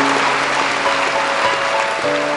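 Audience applause mixed with background music of short held notes.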